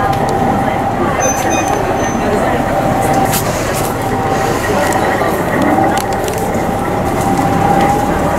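Steady cabin noise inside a diesel railcar as the train runs, with a faint held hum, and passengers' voices murmuring in the background.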